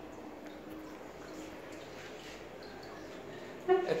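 Quiet room tone with a faint hum; a man's voice starts briefly near the end.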